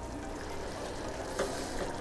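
Stand mixer running steadily, whipping egg whites to a froth, with a short brighter hiss about halfway through.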